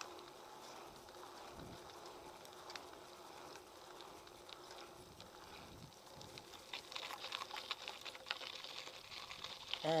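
Mountain bike tyres rolling faintly on a paved path, then a growing scatter of crackling ticks from about seven seconds in as they roll onto loose gravel.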